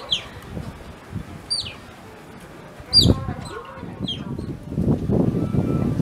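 Asian small-clawed otters giving short, high chirps that fall in pitch, five or so spaced through the clip, the loudest about halfway along with a knock under it. A rough rushing noise builds near the end.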